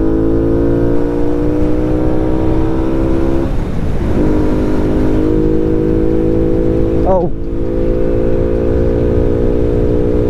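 Honda Wave underbone motorcycle with a 54 mm big-bore single-cylinder engine pulling under throttle, its note rising steadily. It breaks off briefly for a gear change about three and a half seconds in, then picks up and climbs again, with wind rumbling on the microphone underneath.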